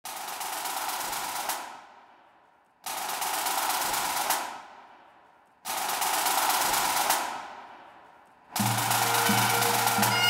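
Pipe band snare drums playing three long rolls about three seconds apart, each swelling to an accented final stroke and ringing away. On a fourth roll near the end, the bagpipe drones strike in with a steady low hum.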